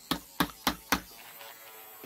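Spinning Wizzzer top knocking sharply against the hard tabletop four times in quick succession, about a quarter second apart, as it wobbles; a faint steady whir follows.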